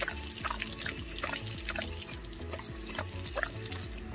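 Garden hose spray nozzle running, water hissing and splashing as a dog laps at the stream coming out of it.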